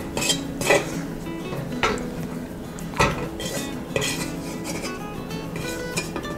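Metal spoon scraping and clinking against a wok while stirring dried cranberries, with several separate clinks spaced about a second apart.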